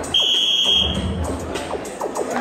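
Electronic boxing round timer giving one steady high beep, about a second long, near the start: the signal that the round is starting. Background music plays underneath.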